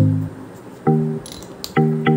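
Background music: short, separate pitched notes that each start sharply and fade, in a light bouncy rhythm.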